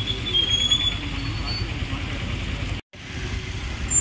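APSRTC bus engine idling, a steady low rumble, with voices in the background. The sound drops out for an instant about three seconds in.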